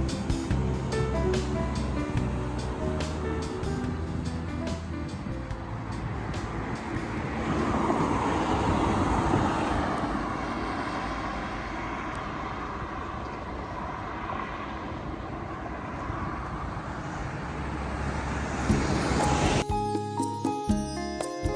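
Background music fades over the first few seconds, leaving road traffic noise: a passing vehicle swells about eight seconds in and fades slowly. Music returns near the end.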